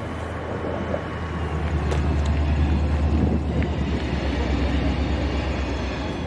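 Distant diesel freight train running: a low engine drone that grows louder about a second and a half in and then holds, with a couple of faint clicks.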